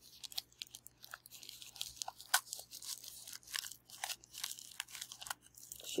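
Wrapping on a packaged item being handled and pulled open by hand, with irregular crinkling and crackling made of many short, sharp crackles.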